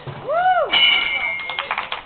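A person's drawn-out shout, rising and then falling in pitch, then a brief high steady whistle-like tone and a quick run of sharp clicks.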